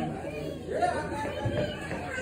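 Crowd chatter: many people talking at once in a large hall, their voices overlapping with no single speaker standing out.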